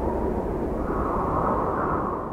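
Cinematic whoosh-and-rumble sound effect for an animated logo, rushing like a jet passing over, with a faint tone inside it that drifts slightly upward.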